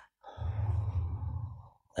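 A man's long sigh or exhale into the microphone, lasting about a second and a half.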